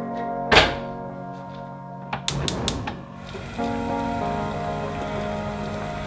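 Background music with a steady melody. About half a second in, a heavy pot is set down on a gas hob's grate with a thunk, and this is the loudest sound. Later come a few quick sharp clicks, and from about three seconds in a steady hiss of water boiling in the pot.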